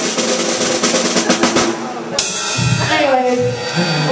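Drum kit played in a quick roll of snare and bass drum strokes for about two seconds, ending in a cymbal crash that rings out.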